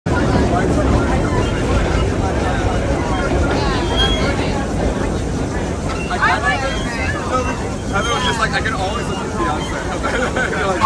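Vintage BMT Standard subway car running, a steady loud low rumble of wheels and motors that eases slightly as it moves along the station platform, with passengers' voices chattering over it in the second half.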